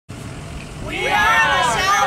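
A person talking, starting about a second in, over a low background hum of outdoor noise.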